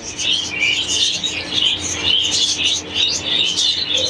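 Many small caged birds, lovebirds among them, chirping at once in a dense, continuous twittering chatter. A faint steady low hum runs underneath.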